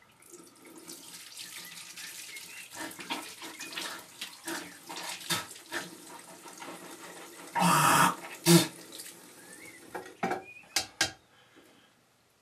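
Tap water running into a bathroom sink, with splashing and small knocks. About eight seconds in come two short, loud bursts, and a few sharp clicks follow near the end.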